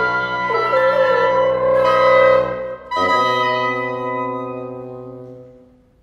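Woodwind quintet of flute, oboe, clarinet, French horn and bassoon playing sustained chords. A brief break comes just before three seconds in, then a new held chord fades away to near silence.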